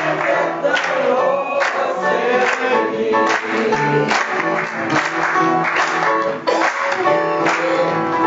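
A congregation singing a gospel song with upright piano accompaniment and hand clapping on the beat.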